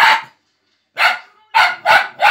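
Fox terrier puppy barking: four sharp barks, one at the start, then a pause, then three in quick succession from about a second in.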